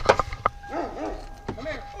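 A big dog giving about four short barks in the second half, after a few sharp clicks from a car door as it opens.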